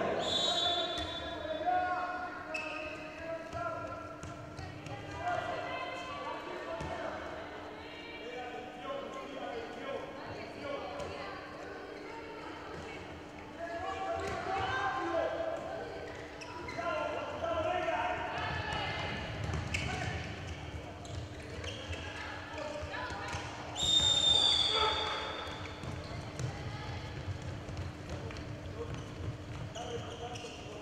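Handball bouncing on an indoor court floor as it is dribbled, with players' voices calling out during play over a steady low hum; a high whistle blast sounds once, late on, most likely the referee's whistle.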